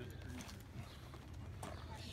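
A harnessed Percheron draft horse standing close by, giving a few faint, soft knocks over a low, steady background rumble.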